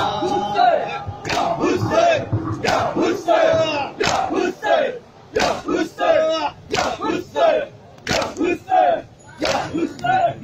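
A crowd of mourners performing matam: open hands slapping bare chests in a steady beat about every half second, with many men shouting a chant in time with the strikes.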